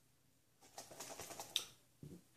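Faint, irregular clicks and taps for about a second from a Canadian C3 gas mask being handled, with one sharper click near the end.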